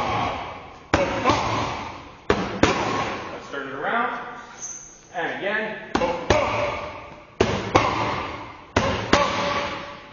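Boxing gloves smacking into leather focus mitts during a left-hook counter drill. The hits come in about five quick pairs, each pair about a third of a second apart, and each smack dies away with the echo of the gym.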